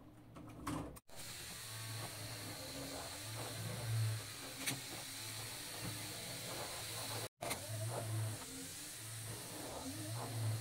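Small electric motors and plastic gearing of a LEGO Technic walking vehicle running, a steady whirring hum that swells and fades about once a second as the mechanism cycles, with occasional sharp plastic clicks.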